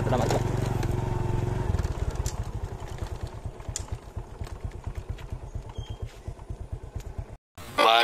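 Small motorcycle engine running steadily while riding. About two seconds in it drops to a slow, pulsing putter that fades away, then the sound cuts off suddenly near the end.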